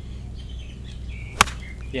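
Golf iron striking the ball from a fairway bunker: one sharp crack about one and a half seconds in.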